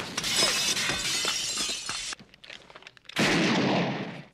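Window glass smashing, a dense crash for about two seconds. About three seconds in comes a second loud burst lasting just under a second.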